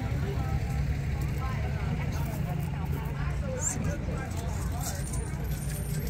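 Outdoor background: a steady low rumble with faint, distant voices chattering.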